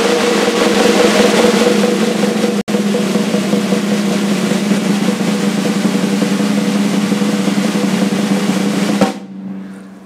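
A continuous snare drum roll on a drum kit, with the drum's ring sounding steadily underneath and a momentary break about two and a half seconds in. It stops sharply near the end, leaving the drum ringing briefly as it fades.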